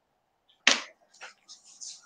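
A short sharp click about two-thirds of a second in, followed by faint breathy noises, heard over a video-call connection.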